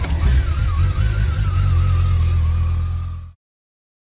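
Motorcycle engine running with a steady low rumble, cutting off abruptly a little over three seconds in.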